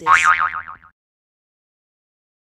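A cartoon 'boing' sound effect: a springy tone wobbling quickly up and down in pitch, lasting just under a second.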